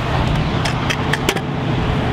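Stunt scooter wheels rolling over a concrete skate bowl, a steady low rumble with several sharp clicks about a second in.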